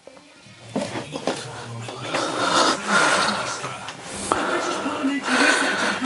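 Rustling and scraping with light knocks of plastic pipe and fittings being handled and pushed about in a cramped space under a boat's floor base.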